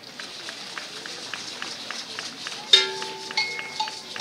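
Rhythmic percussive clicks, nearly four a second, then a sharp metallic strike near the end that rings on with a steady tone for about a second.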